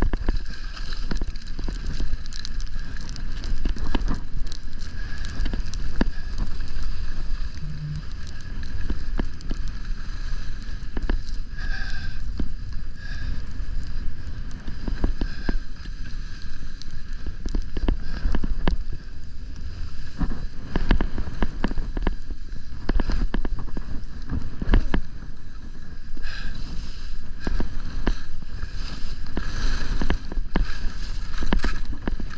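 Wind rushing over the microphone during a downhill ski run, with skis scraping and clattering over chopped, tracked-up snow.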